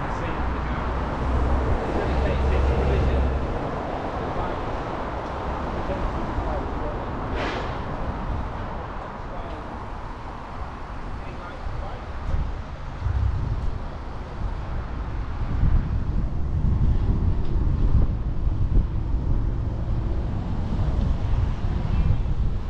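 Motor traffic passing on a city road, with low wind rumble on the microphone of a moving bicycle. The rumble is heavier near the start and again through the second half, and a brief sharper passing sound comes about seven seconds in.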